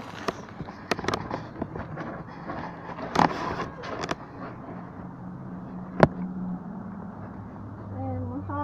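Scattered sharp clicks and knocks, the loudest a single sharp pop about six seconds in, over a low steady hum that starts about five seconds in.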